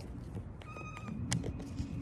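Tarot cards being handled and shuffled by hand, with a few crisp card clicks, over low wind rumble on the microphone. A brief steady high tone sounds about halfway through.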